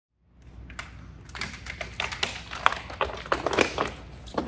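Tesla Cybertruck tonneau cover being rolled up by hand, its extruded slats clicking and clattering against each other in quick, irregular knocks that grow louder as the roll builds.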